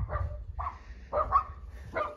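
Small dogs giving a few short barks from behind a closed glass door.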